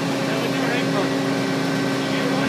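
Heavy construction machinery running steadily: the trench-digging rig for the hydraulic diaphragm grab, a constant engine drone with a held low hum.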